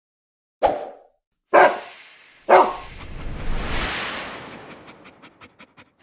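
Audio logo sting: three dog barks about a second apart, then a swell of noise that breaks into a quick run of ticks, about six a second, fading out.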